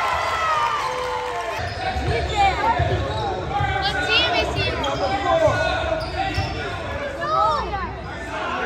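A basketball dribbled on a hardwood gym floor, repeated thuds starting about a second and a half in, with sneakers squeaking on the court and voices of players and spectators.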